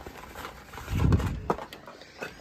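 Handling noises of a metal canning lid and its cardboard box: a dull thump about a second in, then a short click.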